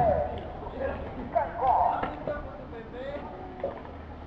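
People talking, a few short stretches of voices, with one sharp knock about a second and a half in, over a steady low hum.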